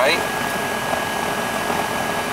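York microchannel three-ton R-410A outdoor condensing unit running, its compressor and condenser fan giving a steady whir with a thin high-pitched whine; the system is running low on refrigerant charge.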